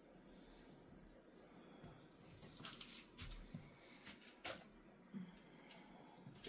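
Near silence with a few faint crackles and rustles, from moss being picked away from a Cattleya orchid's roots by hand.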